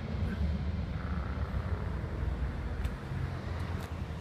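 Steady low outdoor rumble with even background noise, and a couple of faint clicks near the end.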